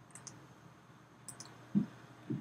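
Quiet room tone with a few faint, sharp high clicks and one soft low thump near the end.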